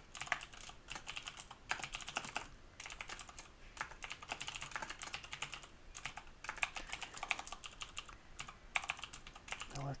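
Typing on a computer keyboard: quick, irregular keystrokes in runs broken by brief pauses.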